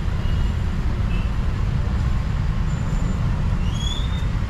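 A steady low rumble with a fainter hiss above it, the kind of outdoor background noise made by wind on a microphone or by road traffic.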